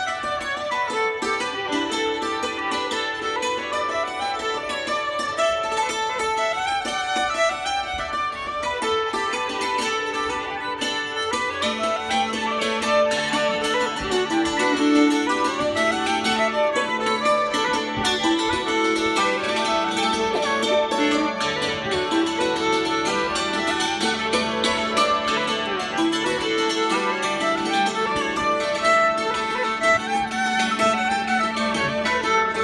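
Hammered dulcimer and violin playing a tune together: rapid struck notes from the dulcimer's hammers under the bowed violin melody. A held low drone note joins a little before halfway through.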